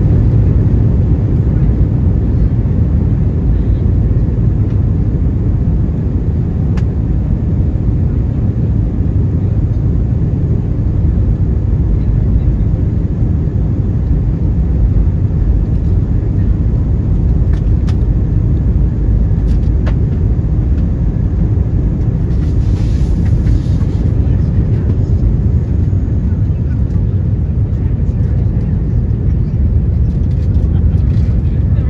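Airbus A319 on its takeoff roll and lift-off, heard from inside the cabin over the wing: a loud, steady, low rumble of the jet engines at takeoff thrust.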